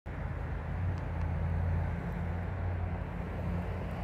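Steady low hum of a distant diesel freight locomotive's engine, slightly stronger in the first couple of seconds.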